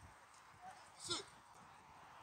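A short shouted call from a person's voice, about a second in, rising then falling in pitch, over faint outdoor background.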